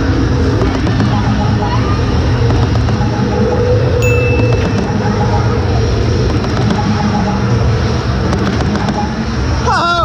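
Loud arcade din: electronic game music and machine sounds layered over one another, with a short high electronic beep about four seconds in.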